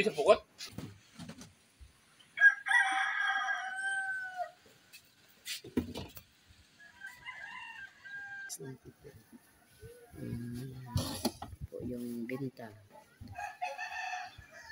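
A rooster crowing: one long, loud crow a couple of seconds in that drops in pitch at its end, then a fainter crow and another starting near the end.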